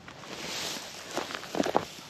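Footsteps crunching on dry straw mulch as a person walks up, with a quick run of sharp crunches in the second half.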